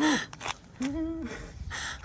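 Wordless vocal sounds from a person clowning around: a sharp cry with falling pitch at the start, a short held hum about a second in, and a breathy gasp near the end.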